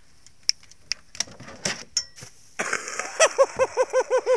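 A few scattered clicks and knocks, then about three seconds in a person bursts into rapid, high-pitched laughter, about five laughs a second.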